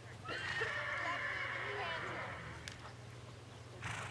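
A horse whinnying: one long call about two seconds, starting high and wavering, then fading away.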